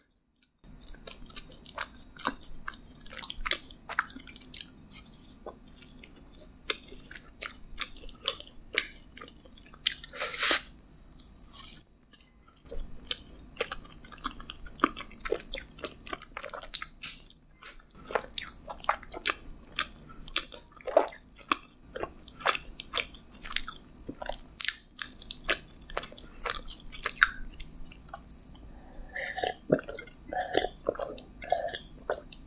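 Close-miked chewing of a soft lemon-filled doughnut dusted with powdered sugar: a steady run of wet, sticky mouth clicks and smacks, with one louder noisy burst about ten seconds in. Near the end, gulps of an iced drink begin.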